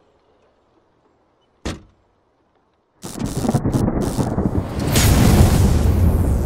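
Thunder sound effect: a single short sharp crack a little under two seconds in, then after a second of silence a loud rolling rumble of thunder with crackle that swells toward the end.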